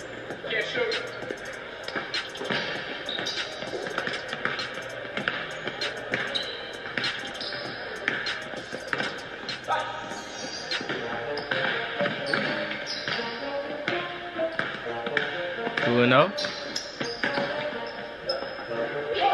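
A basketball being dribbled and bounced on a hardwood indoor court, a run of sharp bounces, under background music. Near the end a loud rising sweep stands out.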